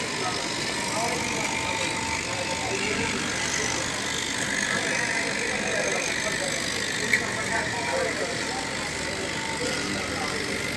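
Electric straight-knife cloth cutting machine running steadily, its vertical blade cutting through a tall stack of layered fabric. A single sharp click about seven seconds in.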